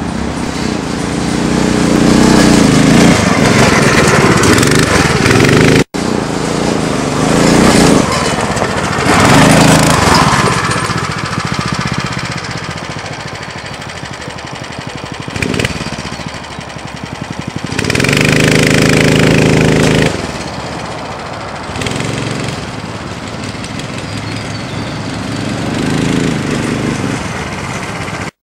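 Small 9 hp engine of an off-road buggy running and revving as it is driven around, the sound swelling and fading as it comes near and moves away. It is loudest for a couple of seconds about eighteen seconds in, and breaks off sharply for an instant about six seconds in.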